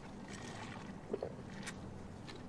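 Faint steady hiss of room tone, with one soft click just past a second in and a brief tick a little later.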